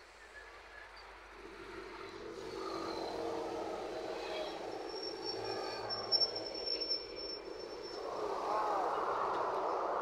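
Road traffic: engine noise swells up over the first few seconds and holds steady. Near the end an engine rises and falls in pitch as it passes.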